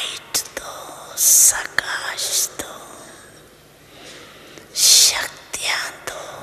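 Whispered speech: a breathy, soft voice with two strong hissing 'sh' or 's' sounds, one just over a second in and one near five seconds.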